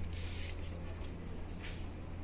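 A steady low hum with two short rustling swishes, one just after the start and one near the end.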